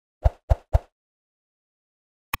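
Three quick cartoon pop sound effects in a row, about a quarter second apart, from an animated on-screen graphic.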